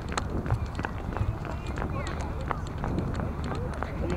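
Handling noise from a moving action camera: a low rumble with many irregular knocks and rattles as its mount jolts over brick paving.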